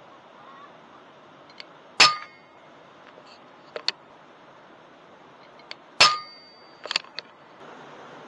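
Two shots from an FX Impact M3 .22 air rifle, about four seconds apart, each a sharp crack with a short metallic ring after it. Smaller clicks follow each shot.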